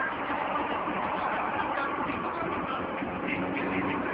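Steady road and engine noise of a car driving along a highway, heard from inside its cabin, with a faint low hum coming in near the end.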